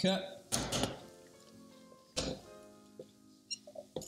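Soft background piano music, with two dull knocks, about half a second and about two seconds in, and a few small clicks near the end as a metal cocktail shaker is handled and set down on the counter.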